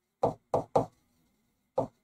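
A pen writing on a smart-board screen: short tapping knocks as the strokes land, three in quick succession in the first second and one more near the end.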